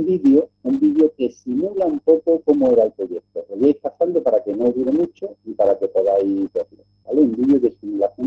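A man's voice speaking over a video-call connection, garbled and breaking up into short bursts with abrupt dropouts to silence between them.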